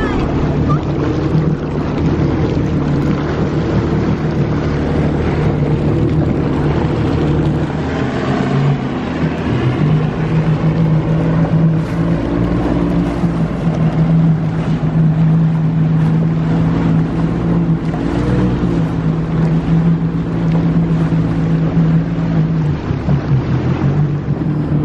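Personal watercraft engine running at low speed with a steady hum, its note wavering and shifting about nine seconds in. Water and wind noise throughout.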